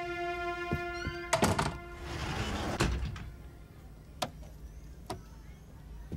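A held synthesizer chord from the score cuts off about a second in, followed by a door thumping shut with a short clatter. Then comes a rustling swish ending in a sharp knock, and a few soft scattered taps.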